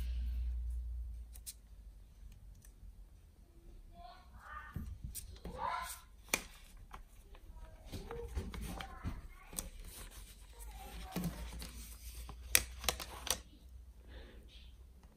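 A long paper till receipt being handled and rustled, with faint voices in the room and a few sharp clicks near the end.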